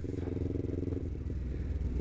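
Kawasaki Ninja 250R's parallel-twin engine running as the bike rolls along in a low gear. Its steady note eases off about a second in.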